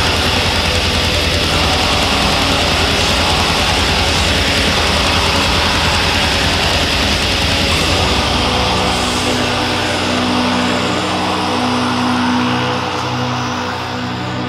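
Black metal recording: a dense wall of distorted guitars over fast drumming. About eight seconds in, the fast drumming drops out and held low guitar chords ring on.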